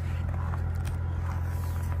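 The 2024 Chevrolet Suburban's 3.0-litre diesel engine idling: a steady, even low hum.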